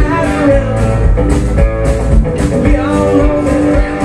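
Live blues-rock band playing: electric guitars and bass over a steady drum beat, with bending guitar notes.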